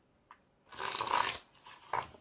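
A deck of tarot cards shuffled by hand: a dense rustle of cards sliding together about a second in, lasting under a second, then a sharp tap of the deck near the end.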